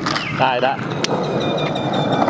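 Skateboard wheels rolling on rough concrete, a steady rolling noise, with one sharp clack about a second in.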